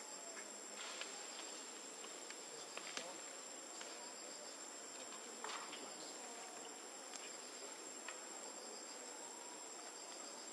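Steady high-pitched insect chorus, with a few faint clicks and taps.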